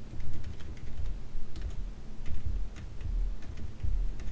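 Typing on a computer keyboard: a run of irregular key clicks, with dull low thuds under the keystrokes.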